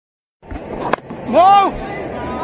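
A single sharp knock, then about half a second later a loud shouted call from a cricket player, rising and falling in pitch, over steady ground and crowd noise.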